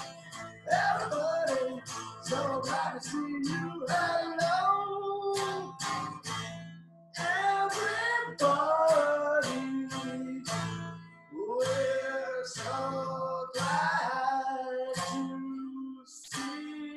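A man singing with his own strummed archtop guitar, a steady strumming rhythm under the melody.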